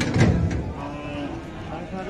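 Cattle mooing: a loud, low call in the first half second, followed by quieter lowing and voices.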